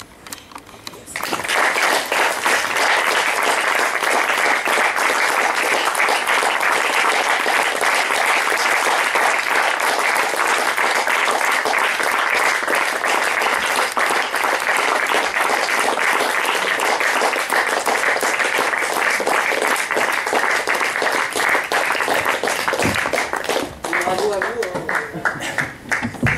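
Audience applauding steadily. The clapping begins about a second in and stops just before the end.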